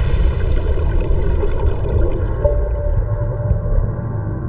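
Deep, churning rumble of surging water heard from beneath the waves, under a soft musical drone. A single held tone comes in about halfway through.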